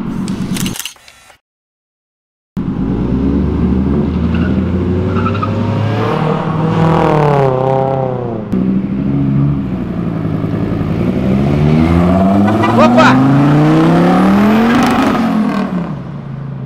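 A car engine revving and accelerating hard, its pitch climbing in several rising sweeps in the second half. The sound drops out for about a second near the start.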